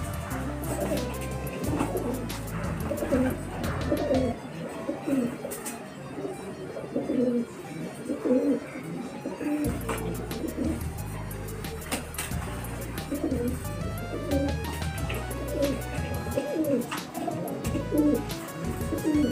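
Feral rock pigeons cooing again and again while squabbling over food, over background music with a low bass line.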